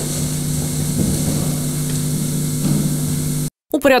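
Steady low hum of a large meeting hall's room tone during a standing silence, with a few faint rustles. It cuts off abruptly near the end, and a man's voice begins.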